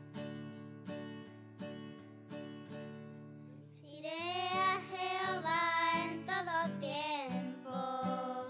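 Acoustic guitar strummed in a steady rhythm, about three strums every two seconds. About halfway through, children start singing over the guitar.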